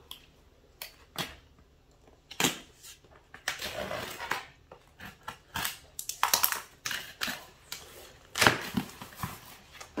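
Cardboard shipping box being torn open by hand: packing tape ripping and cardboard flaps scraping and crinkling in a string of short, sharp rips with brief pauses between.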